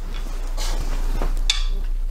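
Handling noise as the rackets are shifted and a hand reaches for the camera: rustling, then one sharp knock about one and a half seconds in, over a steady low hum.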